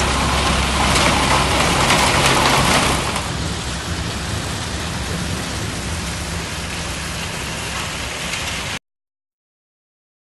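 Stone crushing and washing plant running: a steady rushing noise over a low machine hum. The noise drops somewhat about three seconds in and cuts off abruptly near the end.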